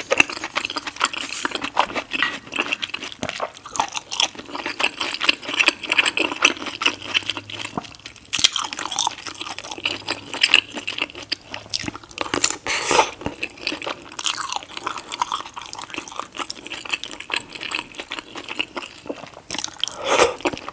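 Close-miked eating sounds: wet chewing and mouth clicks from a mouthful of seafood boil drenched in thick sauce, going on irregularly throughout.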